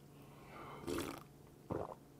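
A man drinking makgeolli from a bowl: a noisy sip about half a second in, then a short throaty gulp near the end.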